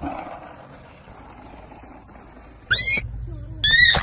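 Two short, loud, high-pitched shrieks about a second apart near the end, the first gliding up sharply in pitch and the second held briefly, over a faint steady background hiss.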